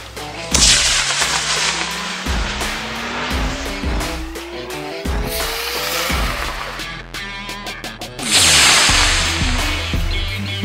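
Background rock music with the loud rushing hiss of a G40-7 model rocket motor igniting and lifting off. The hiss comes twice, once about half a second in and again near the end, as the launch is shown from different cameras.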